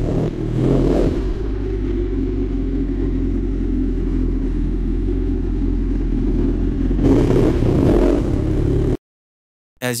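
AI-generated motorbike engine sound with car traffic: a motorcycle engine running and revving, swelling in level about a second in and again near the end before cutting off abruptly.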